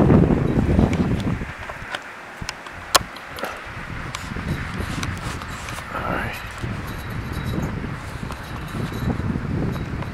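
Wind buffeting the microphone in uneven gusts, with scattered clicks and knocks from the handheld camera and footsteps on grass, one sharp click about three seconds in.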